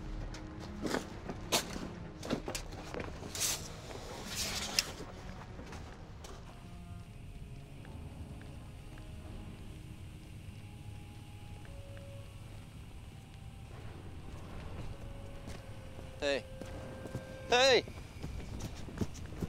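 Film soundtrack: a few sharp knocks and handling sounds, then a faint sustained music bed with sparse held notes. Near the end come two short, loud, wavering cries about a second apart.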